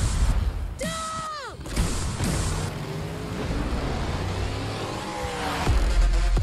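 Film trailer soundtrack: music and car sound effects, with a pitched tone that holds and then drops away about a second in. A swell builds to a loud, bass-heavy music hit near the end.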